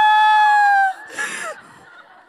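A woman's high, drawn-out vocal exclamation into a microphone: the pitch rises, holds and cuts off about a second in, followed by a short burst of noise.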